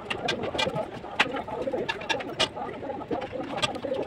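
A bricklayer's trowel and bricks knocking and scraping on fresh mortar: a scatter of sharp taps, the loudest about a second and two and a half seconds in, over a steady low background sound.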